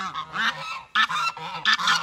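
Domestic geese honking, a rapid run of short harsh calls from several birds overlapping one another.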